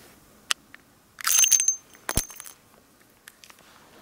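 Spent brass cases pushed out of the swung-out cylinder of a Dan Wesson 715 .357 Magnum revolver, clattering and ringing as they fall. A sharp click comes about half a second in, the clatter of the cases runs from just after one second to about two and a half seconds with a sharp knock in the middle, and a few light clicks follow.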